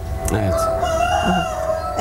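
A rooster crowing once, one long drawn-out crow that rises slightly and then holds for about a second and a half.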